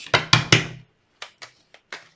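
Tarot cards being shuffled by hand. There is a louder rush of card noise in the first second, then a run of short, irregular clicks and taps as the cards are riffled and squared.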